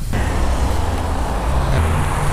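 Street traffic: a motor vehicle's engine running close by, a steady low rumble with road noise.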